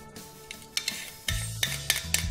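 Metal kitchen tongs clicking against a plate and bowl as pieces of chicken are picked up and dropped into a salad, several sharp clicks coming thicker in the second half, over background music.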